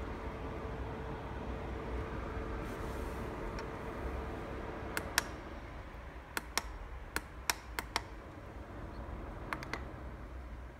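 Beurer humidifier running with a steady low hum and a faint steady tone, now working after its contact fault was repaired. From about halfway, its top-panel buttons are pressed repeatedly, giving about ten sharp clicks, mostly in quick pairs. The tone stops at the first click.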